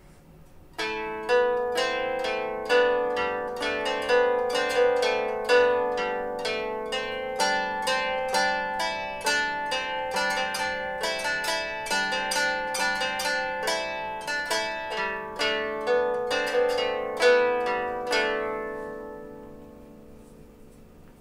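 Germanic round lyre plucked with a plectrum in an improvised run of notes, alternating melody notes with ringing drone strings and changing drones as it goes. The playing starts about a second in, carries a steady stream of plucks, and rings out near the end.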